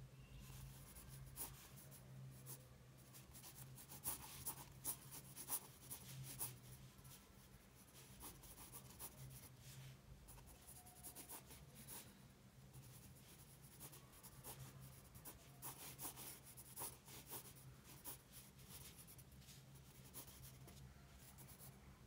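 Soft 6B graphite pencil scratching across sketchbook paper in quick, irregular sketching strokes. The strokes are faint, with a few louder ones in the first half, over a low steady hum.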